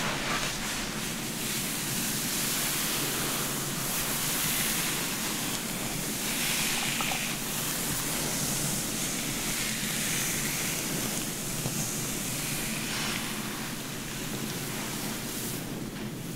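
Fingers running through long, dry hair and massaging the scalp close to the microphone: a soft rustling swish that swells and eases with each slow stroke.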